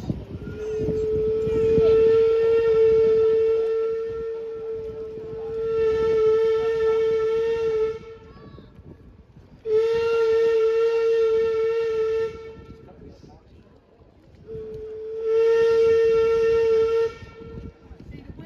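Steam whistle of the paddle steamer Waverley sounding three blasts at one steady pitch: a long blast of about seven seconds, then two shorter blasts of two to three seconds each.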